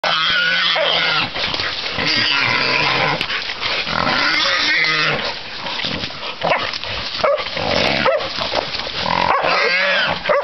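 Feral pig squealing and screaming almost without pause while hunting dogs hold it, with dogs growling underneath.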